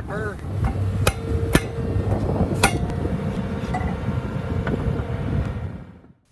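Sharp metal clanks of steel spreader pins and collars on a trench shield: three distinct knocks in the first few seconds, the steel ringing on after them, over a low rumble.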